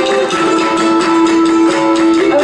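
Live Bolivian folk band playing: strummed acoustic guitars and other small string instruments keep an even rhythm under one long held melody note.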